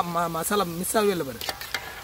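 Cauliflower pakoda deep-frying in a kadai of hot oil, sizzling steadily. A voice sounds loudly over the sizzle for about the first second and a half.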